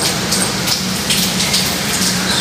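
Water from a tap running into a sink and splashing onto a fabric bag held under the stream, a steady hiss.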